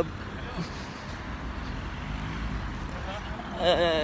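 Steady low rumble of engines and road traffic on a city street, with a faint engine hum in the middle; a man's voice starts near the end.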